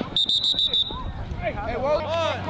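A sports whistle blown in one short, trilled blast lasting under a second, right near the start. Shouted voices from the field and sideline follow it.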